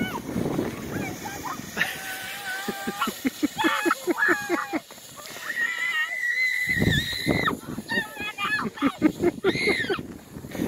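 Children's high-pitched voices shouting and squealing, with a quick run of short calls and then one long held squeal a little past the middle.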